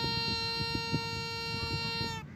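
Snake charmer's pungi (been), a reed pipe with a drone, holding one long steady note. Low knocks and rumble run underneath it.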